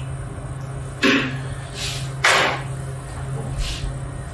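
A metal spoon knocking against a food processor bowl while flour is added: two sharp knocks a little over a second apart, with a steady low hum underneath.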